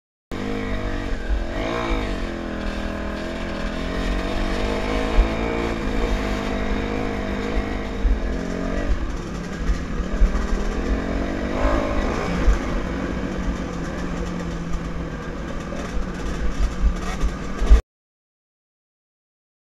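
Kawasaki KX250F four-stroke single-cylinder dirt bike engine heard close from an on-board camera, revving up and down with the throttle while riding, with wind buffeting on the microphone and short knocks from bumps in the trail.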